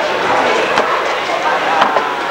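Two sharp thuds of footballs being kicked, about a second apart, the second one louder, over players' voices and calls on the pitch.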